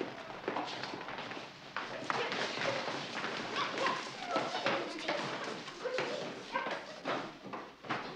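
Indistinct chatter of a room full of children, with scattered knocks and thumps of feet and wooden desks.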